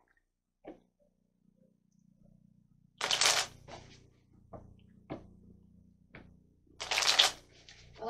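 Tarot cards being shuffled: two short bursts of card noise, about three seconds in and again about seven seconds in, with a few faint taps and clicks between.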